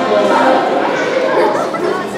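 Many voices chattering at once in a large, echoing hall: an audience talking among themselves, with no single speaker standing out.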